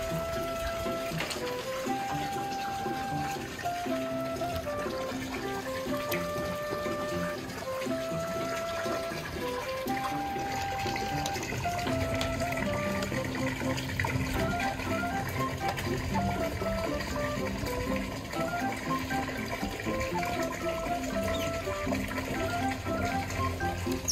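Background music: a melody of held notes stepping up and down over a steady accompaniment.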